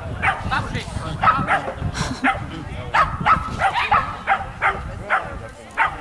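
A small dog barking rapidly and continuously while running an agility course: sharp, high yaps at about two to three a second.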